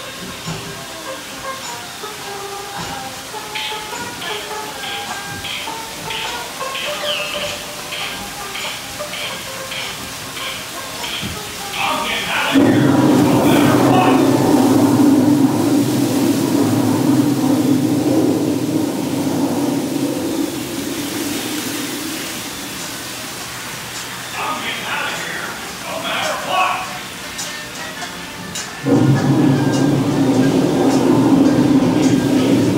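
Dark-ride soundtrack of music and figure voices, then about twelve seconds in a sudden loud, steady rush of water from a gushing waterfall effect. The rush fades over about ten seconds and starts again abruptly near the end.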